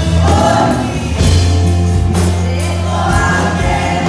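Christian worship song: a group of voices singing together over held bass notes and light percussion.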